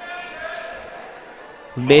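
Faint murmur of voices from the crowd and players in a gymnasium during a stoppage of play. A commentator's voice comes in loudly near the end.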